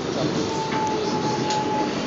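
New York City subway car running, a steady rushing rumble heard from inside the car, with a thin steady whine joining about half a second in.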